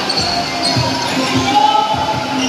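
Regular low thumps, about two a second, echoing in a large gymnasium, with held musical tones and voices above them.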